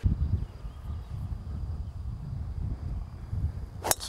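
A golf driver striking a ball off the tee: one sharp crack near the end, over a low steady rumble.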